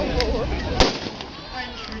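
A single sharp bang about a second in, a pyrotechnic charge going off on a model warship in a mock cannon battle, with voices just before it.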